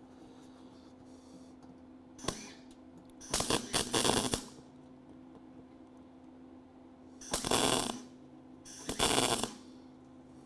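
MIG welder laying plug welds through holes in a sheet-steel floor pan: a brief blip, then three noisy bursts of welding, the longest about a second.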